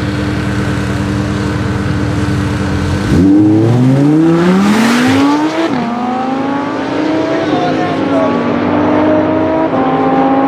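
Audi R8 V10 Plus (5.2-litre V10) and Porsche 991 Turbo S (twin-turbo flat-six) held at steady revs on the drag-strip start line. About three seconds in they launch together with a sudden louder burst, and the engine notes climb in pitch through the gears, an upshift dropping the pitch a couple of seconds later.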